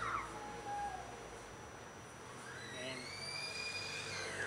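A steady low background hum with no distinct event, then a man's voice drawing out the word "and" near the end.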